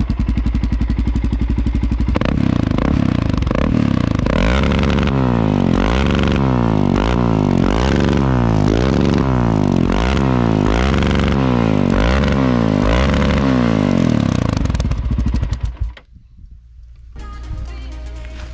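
Honda NX400 Falcon's single-cylinder engine through a Dore aftermarket exhaust, running steadily and then revved in about nine quick throttle blips, each rising and falling in pitch about once a second. The note is deep and crackly. The engine sound cuts off near the end.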